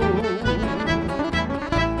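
Two acoustic guitars, one a nylon-strung classical guitar, playing a gaúcho folk song's instrumental passage with a steady pulsing bass line under plucked and strummed chords. A held, wavering note fades out in the first half second.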